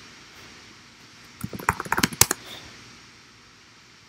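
Typing on a computer keyboard: a quick run of about a dozen key clicks lasting just under a second, starting about a second and a half in and ending with one sharper keystroke.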